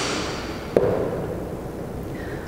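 Metal chuck assembly pulled off a power tapper's spindle and handled on a tabletop: a scraping rustle that fades out over about a second and a half, with one sharp knock about three-quarters of a second in.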